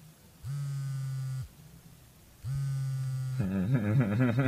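A vibration motor buzzing twice, each buzz about a second long with a second's gap, like a phone on vibrate; each buzz spins up at its start and winds down at its end. Near the end a voice or music comes in.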